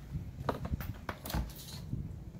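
A few light taps and rustles from handling a canvas and a clear plastic tub on a mat.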